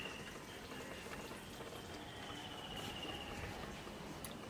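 Faint trickle of soaking water being poured off split chickpeas (chana dal) from a steel bowl onto the ground. A thin, high trill sounds briefly in the middle.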